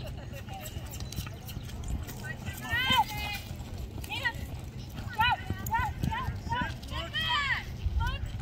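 A horse galloping on arena dirt during a barrel race run, with repeated short, high-pitched yells of encouragement over the hoofbeats.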